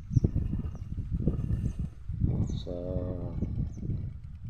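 Footsteps on soil and wind buffeting the microphone as the camera is carried along a row of young corn: a steady jumble of uneven low thumps and rumble, with a short spoken word near the end.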